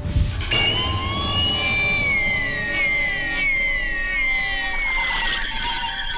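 TV programme sound-effect sting: a sudden whooshing hit, then several overlapping high electronic tones sliding slowly downward one after another.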